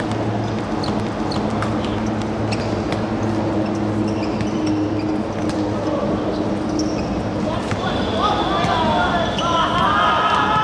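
Football being kicked and bouncing on a hard outdoor court, heard as scattered sharp knocks over a steady low hum. From about eight seconds in, players are shouting.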